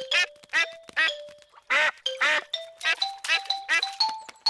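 Cartoon duck quacking: a quick series of short quacks, two louder ones in the middle, over light background music with a held note.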